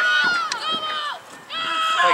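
Two high-pitched shouted calls across a sports field, one drawn out through the first second and another near the end, with a short lull between.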